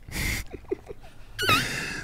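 A man trying a cattle herder's mouth call, drawn in on an inward breath rather than blown out: a breathy rush of air, then about a second and a half in a short high squeal that falls in pitch.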